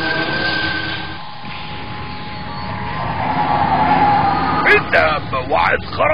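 Cartoon soundtrack sound effects: a mechanical hum with a held tone, swelling into a louder rumbling whir about halfway through. A voice comes in near the end.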